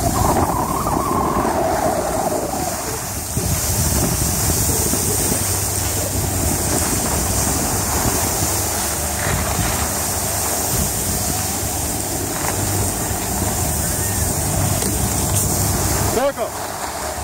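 Wind rushing over the microphone of a camera carried downhill on skis, mixed with the steady hiss of skis sliding over packed snow.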